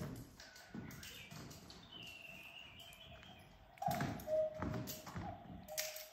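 Cuckoo clock calling "cuck-oo" twice, each call a higher note falling to a lower one with a breathy puff under it, starting a few seconds in.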